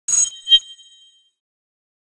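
Two bright chime strikes half a second apart, their high ringing tones dying away within about a second.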